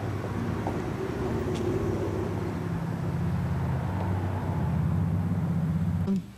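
Low, steady engine hum of a vehicle running, its pitch dropping slightly about halfway through.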